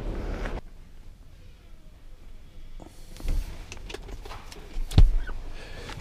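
Low, even background with a few short clicks and knocks scattered through the second half, the loudest a sharp knock about five seconds in.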